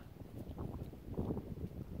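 Faint, uneven low rumble of wind buffeting the microphone.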